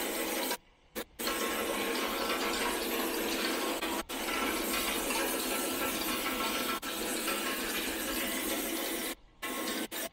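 Plastic cap compression-moulding line machinery running, a steady mechanical clatter with a faint steady hum, broken by two short abrupt gaps.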